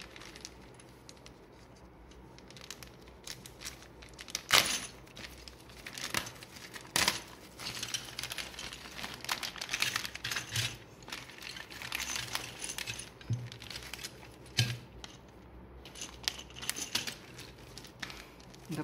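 Thin plastic parts bag crinkling as it is handled and opened, with small plastic building pieces clicking against each other and the table. A sharp click about four and a half seconds in is the loudest sound.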